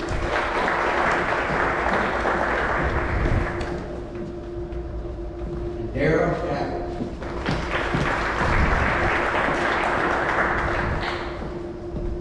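An audience applauding in two rounds of about three to four seconds each, with a short spoken announcement between them.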